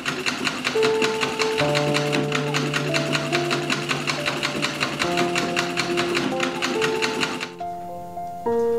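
Foot-treadle sewing machine on a cast-iron stand running at a steady pace, a fast even clatter of stitches at about five or six a second, stopping abruptly near the end. Background music of soft held notes plays underneath.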